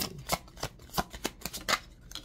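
A deck of oracle cards being shuffled by hand: a quick, irregular run of sharp card snaps and slaps, about a dozen in two seconds.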